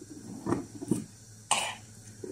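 A person coughing lightly and clearing the throat: a couple of small bursts, then a sharper cough about one and a half seconds in.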